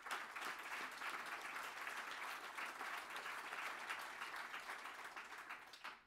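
Audience applause: many hands clapping in a steady patter that fades out near the end.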